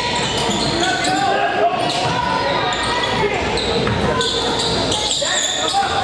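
Basketball game sounds in a large, echoing gym: a basketball bouncing on the hardwood floor amid indistinct shouting voices of players and spectators.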